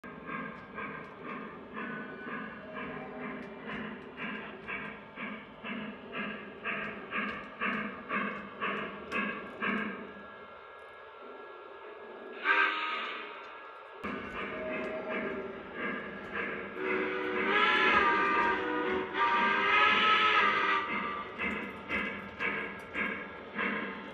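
O gauge model steam locomotive's onboard sound system chuffing in a steady beat of about two a second, with a sudden hiss about halfway and two long whistle blasts, wavering in pitch, near the end.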